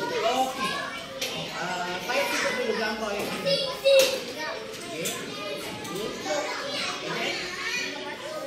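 Young children talking and chattering in a classroom, with a sharp knock about four seconds in.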